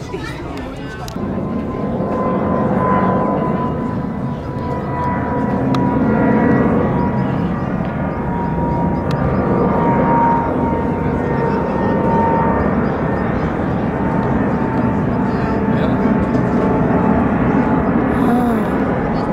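Twin-engine wide-body jet airliner climbing out overhead: a loud, steady jet roar with a high whining tone. It swells about a second in and stays strong to the end.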